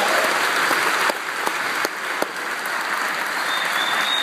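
Congregation applauding: a dense, steady clapping from a large crowd.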